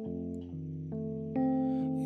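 Electronic keyboard playing slow sustained chords of a ballad accompaniment, with the chord changing a few times.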